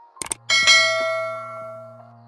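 Subscribe-animation sound effect: two quick clicks, then a bright notification-bell chime that rings and fades over about a second and a half.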